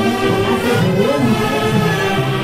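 Tunantada orchestra of violins and harps playing a melody in full ensemble.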